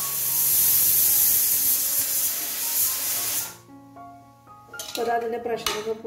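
Stovetop pressure cooker on a gas burner venting steam in a loud, steady hiss that cuts off abruptly about three and a half seconds in. Faint background music follows.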